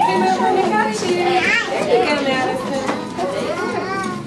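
Overlapping voices of toddlers and adults chattering and calling out over one another, with a child's voice rising high about a second and a half in.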